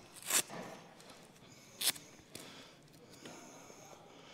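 Motorcycle gloves being pulled off and gear handled: two short scratchy rasps about a second and a half apart, with faint rustling between.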